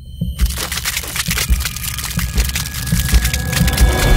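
Sound effects for an animated logo: a dense crackling noise that builds steadily, over irregular low thumps.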